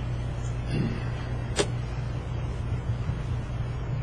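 Steady low hum of the meeting room's background noise, with a single sharp click about one and a half seconds in.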